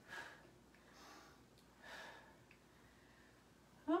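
A woman's breaths puffed out through the lips during exercise, three faint exhalations about a second apart.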